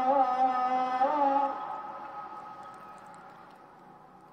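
A muezzin singing the afternoon call to prayer (ikindi ezanı) over a mosque's outdoor loudspeaker, holding a long ornamented note that ends about a second and a half in. The voice then lingers as an echo that fades away.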